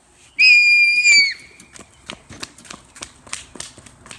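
A whistle blown once, a steady high note lasting about a second that drops slightly as it cuts off. It is followed by quick, light footsteps of someone running on concrete.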